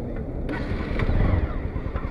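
Bajaj Pulsar NS200's single-cylinder engine idling steadily, with a light click about half a second in.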